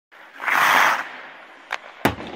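A short whoosh sound effect with the channel's logo intro: a half-second rush of noise that fades away, followed by a faint click near the end.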